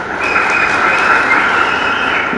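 A large audience cheering, a steady roar with high whistles on top.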